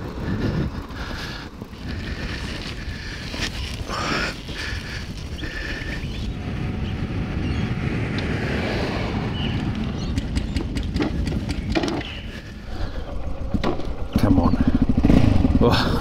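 Motorcycle with a flat battery being clutch-started rolling downhill: wind and tyre noise build as it gathers speed, then about two seconds before the end the engine fires and keeps running, suddenly louder.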